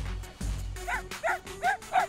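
Cartoon poodle yapping: a quick run of short, high yips, about three a second, starting about a second in, over background music.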